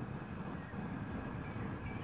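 Quiet outdoor background: a low, steady rumble with no distinct event.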